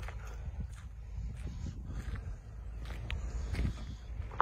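Footsteps on a muddy riverbank, as a few light irregular clicks over a steady low rumble on the phone microphone.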